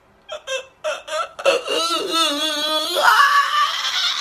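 A man laughing hysterically: a few short bursts, then a long wavering wail of a laugh about halfway through, rising into a high-pitched squeal near the end.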